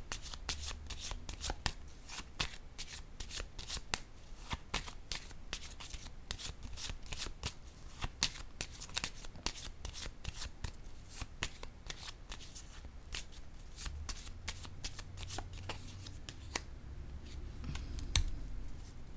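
A deck of tarot cards being shuffled by hand: a long run of quick card snaps and slides that thins out shortly before the end.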